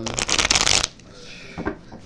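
A deck of cards being shuffled by hand: a quick, loud flutter of card edges lasting under a second, followed by a quieter handling of the cards.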